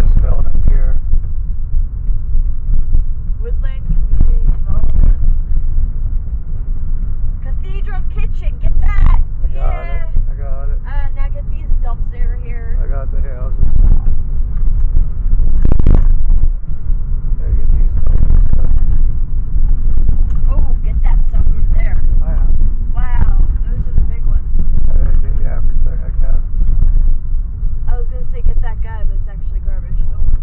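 Car cabin noise while driving: a steady low rumble of tyres and engine heard from inside the moving car.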